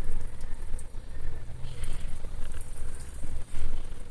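A low rumble under faint rustling and a few light ticks from spider plant leaves and potting sand as the plant is gripped and lifted by hand.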